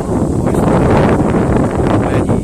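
Wind buffeting the microphone: a loud, steady rumbling roar that swamps everything else.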